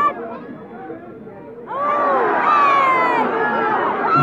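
Football crowd shouting and yelling together, swelling up suddenly about a second and a half in, many voices at once.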